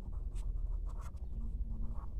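Pencil writing on notebook paper: a few short strokes as a word is written by hand.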